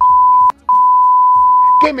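A high, steady censor bleep in two parts: a short one of about half a second, a click and a brief break, then a longer one of just over a second. It covers spoken words.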